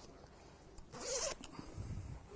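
A zip on the removable quilted lining of a waxed-cotton motorcycle jacket being pulled, giving one short zipping rasp about a second in, with faint rustling of the fabric as the lining is handled.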